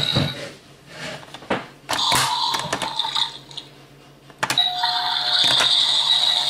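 Electronic sound effects from the Ugglys Pet Shop toy playset's sound unit: a doorbell sound about two seconds in, and another electronic sound that starts with a click near the end and keeps going. A few sharp plastic clicks come first as the pieces are handled.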